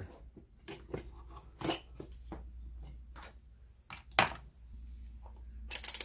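Scattered light clicks and knocks of hands handling items and test leads on a workbench, with a brief rustle near the end, over a low steady hum.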